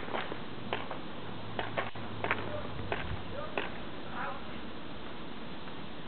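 Paintball markers firing: a string of sharp, irregular pops, about eight over the first four seconds, over a steady background hiss.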